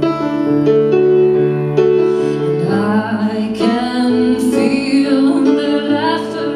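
Piano played live in slow, sustained chords, with a woman's singing voice over it in places.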